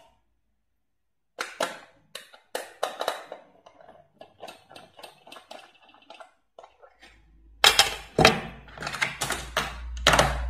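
A small screwdriver working the screw of a plastic toy's battery cover: a run of light, quick clicks and scrapes, then louder plastic clacks near the end as the cover comes off, over a low rumble of handling.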